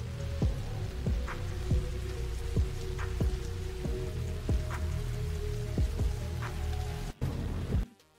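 Soundtrack of a Sora 2 AI-generated rainy night street scene: steady rain with soft held music notes and a low beat pulsing under it. It cuts off suddenly just before the end as the clip stops.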